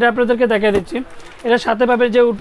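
A man talking, with a short pause about a second in.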